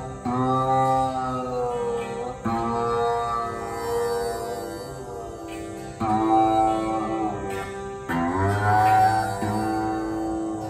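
Rudra veena playing Raag Abhogi in slow, long-held notes that bend in pitch, over a steady tanpura drone. Four plucks about two seconds apart, each note ringing on and gliding.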